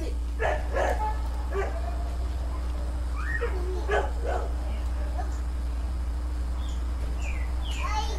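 A dog barking and yipping in short, separate calls.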